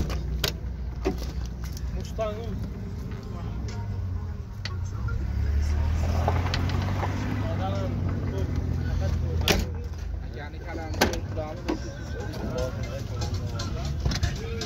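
A low, steady motor-vehicle rumble that swells in the middle, with a few sharp knocks and faint voices in the background.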